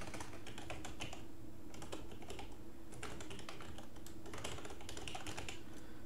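Typing on a computer keyboard: quick runs of key clicks with short pauses between them, as a web address is typed out.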